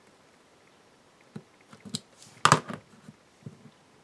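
A few faint clicks and taps from a craft knife and a paper-covered cube block being handled, starting about a second in, after a moment of quiet room tone.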